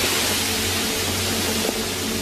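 Vinegar boiling off fire-heated limestone: a steady, loud hiss of steam. The acid is attacking and cracking the hot rock.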